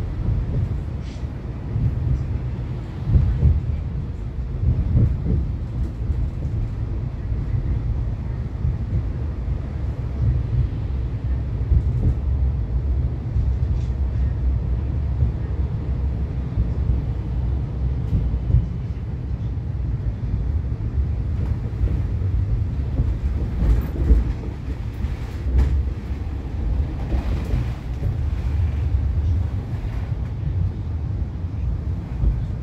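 Siemens Combino low-floor tram running, heard from inside the passenger cabin: a steady low rumble of wheels and running gear on the rails, with occasional short, louder knocks, more of them near the end.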